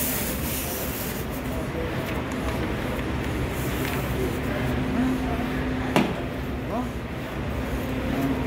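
Steady hum of bookbindery machinery running, with a held low tone, and a single sharp click about six seconds in.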